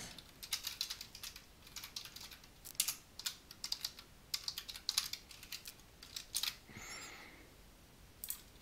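Typing on a computer keyboard: irregular clusters of key clicks with short pauses, as a line of code is typed.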